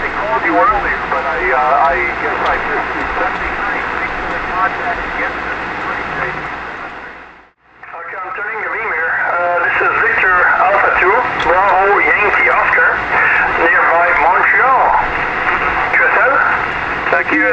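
Single-sideband voice on a 144 MHz amateur radio contact: talk, then a brief fade to silence about halfway. After it, a distant station's voice comes from the receiver, thin and narrow-sounding over band hiss.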